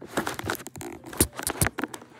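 Close rustling of blankets and handling noise as a phone is moved about, a quick string of sharp crinkly clicks and scrapes.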